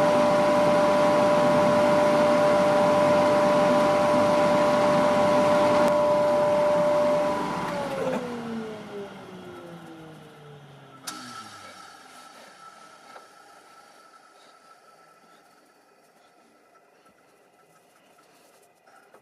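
Woodturning lathe motor running with a steady hum, then switched off about eight seconds in, its pitch falling as it winds down over a few seconds. A sharp click follows, then only faint brushing of finish onto the wood.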